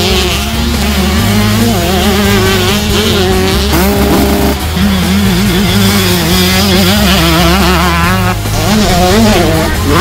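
Two-stroke motocross bike engines revving up and down as the bikes accelerate, mixed with a music track that has a steady, stepping bass line.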